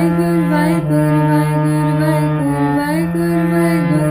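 Harmonium playing a slow shabad melody in sustained reed notes that step from one pitch to the next, with a voice gliding along in a chant-like line.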